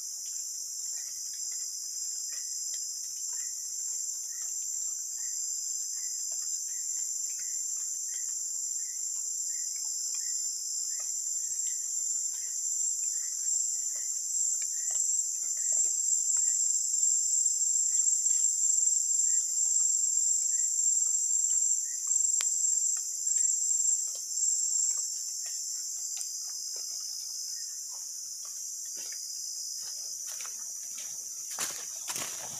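Chorus of tropical forest insects: a steady, high-pitched drone that swells louder through the middle and eases off about 25 seconds in. A faint short chirp repeats a little faster than once a second through the first two-thirds.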